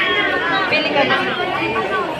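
Background chatter: several people talking at once, with no other sound standing out.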